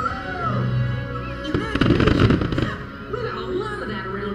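Fireworks-show music playing, with a rapid cluster of firework bursts and crackle from about a second and a half in to just under three seconds.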